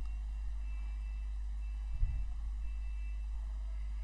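Steady low hum of the recording's background noise, with a soft low bump about two seconds in.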